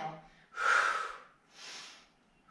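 A woman breathing hard in time with a Pilates knee-to-elbow movement. A loud, rushing breath out comes about half a second in, followed by a softer breath in near the end.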